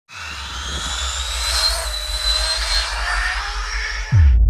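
Intro sound design for a channel logo: a loud, hissing swell rising in level, with thin tones gliding slowly upward over a low pulsing bass.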